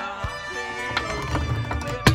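Hand-painted wooden Santa figures toppling like dominoes along a wooden plank: a quick run of wooden clacks, thickest in the second half, over background music.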